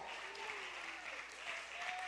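Faint congregation applause, with a few distant drawn-out voices calling out from the crowd.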